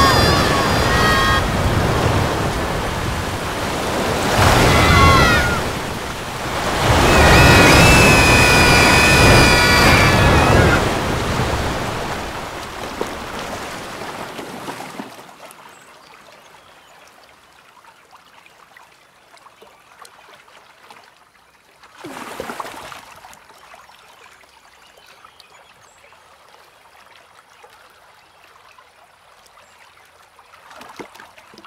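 Heavy rain and rushing floodwater make a loud, dense roar, with high, wavering pitched cries or tones over it in the first few seconds. About halfway through the roar dies away to quiet, scattered drips and a faint trickle of water, broken by one short splash or gush a few seconds later.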